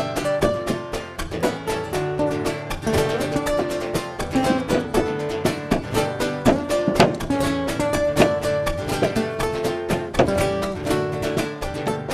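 Malambo: acoustic guitar playing with the dancer's boots striking the wooden stage in rapid zapateo footwork, many sharp stamps and taps a second over the guitar.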